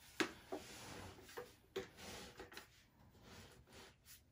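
Plastic and metal-tube parts of a Graco Everyway Soother baby swing being handled and fitted together: a scattered series of light clicks and knocks, the sharpest just after the start.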